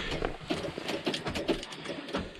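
Small clicks and jingles of keys at a truck's ignition after a failed start, with a soft laugh; no engine cranking or running is heard, because the weak batteries cannot turn it over in the deep cold.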